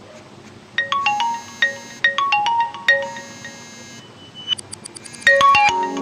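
A phone ringtone playing a marimba-like melody of struck notes, starting about a second in and growing louder and fuller near the end.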